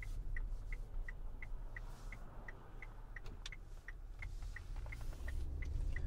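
Car turn signal clicking steadily, about three ticks a second, over the low rumble of the moving car heard from inside the cabin.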